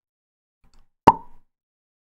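Near silence broken about a second in by a single short pop.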